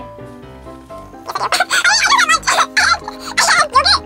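Background music playing; from about a second in, a girl's high-pitched, wordless playful vocal noises over it.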